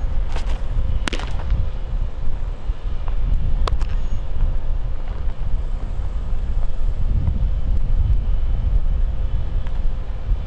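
Wind buffeting the microphone throughout, with a sharp pop about a second in as a pitched fastball smacks into the catcher's leather mitt, and another sharp smack a few seconds later.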